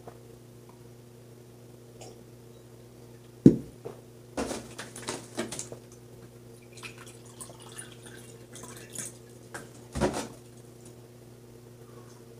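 Water poured from a plastic gallon jug into a cut-glass goblet, with plastic handling clicks before the pour. A sharp knock comes about a third of the way in and another near the end, as glass and jug are set down on the table, over a low steady hum.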